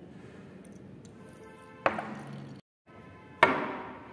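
Two sharp glassy knocks about a second and a half apart, each with a short ringing tail, as glassware and a tea strainer are handled and set down on a table. Faint background music runs underneath.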